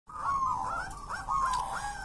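Caged zebra dove (perkutut) cooing: a rippling run of short notes over a held tone, repeating about three times a second.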